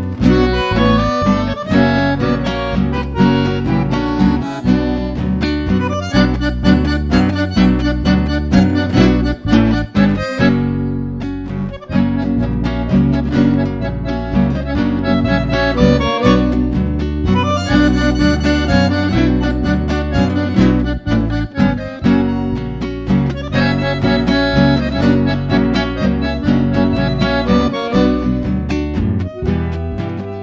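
Bandoneon and acoustic guitar playing a chamamé together, with a brief break about eleven seconds in.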